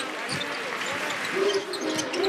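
Basketball dribbled on a hardwood court, the bounces heard over steady arena crowd noise.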